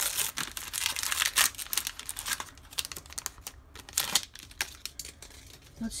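Foil wrapper of a baseball card pack crinkling and tearing as it is pulled open. The crackling is dense for the first couple of seconds, then thins to sparser crinkles and clicks.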